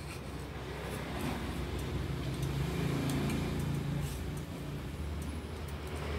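A passing motor vehicle's engine hum swells to its loudest about halfway through and fades again. Faint light clicks come from the knife being clamped into a fixed-angle sharpening jig.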